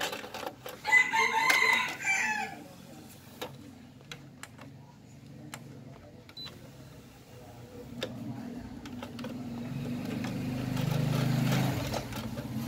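A rooster crows once, about a second in. A few light mechanical clicks follow from the Pioneer 3-disc CD changer as its disc-2 tray opens, and a low hum builds toward the end.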